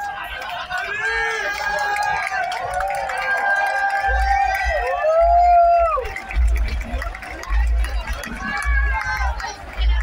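Crowd of many voices shouting and calling out together at a fireworks display, one long rising-and-falling call standing out about five seconds in. From about four seconds in, deep low rumbles repeat under the voices.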